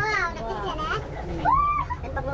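Lively chatter between several people, with a short high-pitched exclamation about one and a half seconds in, over a steady low rumble.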